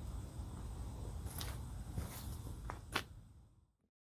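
Low outdoor rumble with a few soft clicks and rustles scattered through it, all cutting off suddenly near the end.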